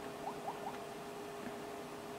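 Quiet room with a steady faint hum and three short, faint rising squeaks in quick succession in the first second.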